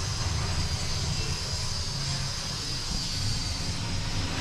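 Steady low background rumble with an even hiss and a faint high whine, without any distinct events.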